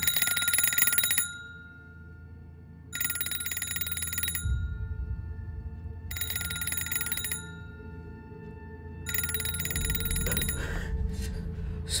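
Telephone bell ringing four times, each ring about a second and a half long and spaced about three seconds apart, with a fast trilling bell sound, over a low steady hum.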